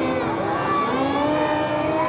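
Electric motor and propeller of a radio-controlled model plane whining, its pitch gliding up and down as it throttles up and runs for take-off, with voices underneath.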